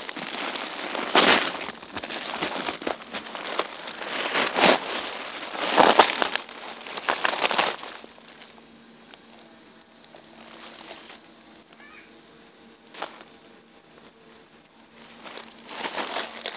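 The papery grey envelope of a bald-faced hornet nest being crumpled and torn open by hand, crackling in several loud bursts over about the first eight seconds. After that it goes much quieter, with a faint steady hum, a single click, and more rustling near the end.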